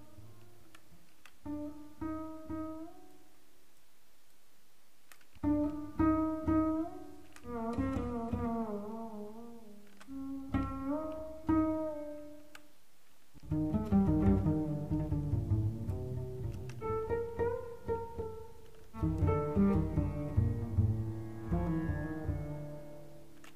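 8Dio Bazantar sampled acoustic bass with drone and sympathetic strings, playing its 'Dark Solo with Drone' phrase samples: four deep, melancholy phrases with short pauses between them. The notes slide in pitch and ring on.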